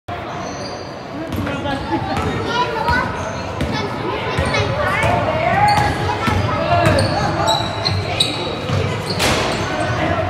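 Basketball being dribbled on a hardwood gym floor, with repeated bounces, amid spectators' and players' voices in a large indoor hall.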